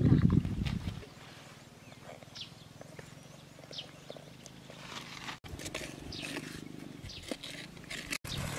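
A loud low rumble for about the first second, then quieter scraping and rustling of bare hands digging and pulling at wet soil in a hole, with a few faint short high chirps.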